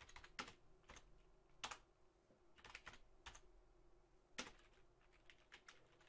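Faint typing on a computer keyboard: irregular single keystrokes and short runs of clicks with pauses between.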